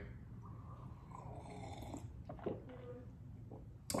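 Faint breathing and mouth noises of a man tasting a light lager, with a few small clicks.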